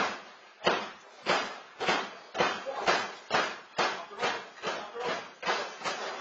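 A regular series of sharp smacks, about two a second, fading a little toward the end, from the action in a pro-wrestling training ring: strikes, stomps or rhythmic clapping.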